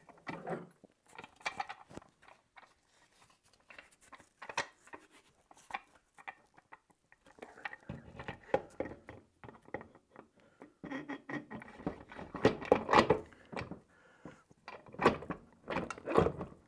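Overdrive housing of a 48RE automatic transmission being set down over guide pins onto the main case: a run of metal knocks, clicks and scrapes, busiest in the last few seconds.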